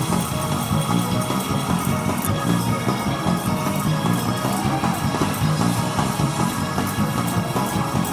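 Lively live gospel music from a church band and choir, with a quick, steady percussive beat.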